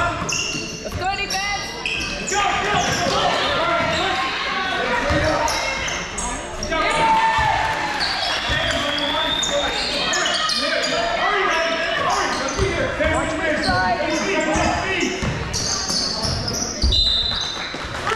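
A basketball bouncing repeatedly on a hardwood gym floor during play, with players' and spectators' voices calling out across the gym.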